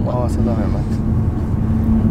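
Cabin noise of a Mercedes-Benz car being driven: steady low engine and road rumble with a held low drone, heard from inside the car. A few spoken words at the start.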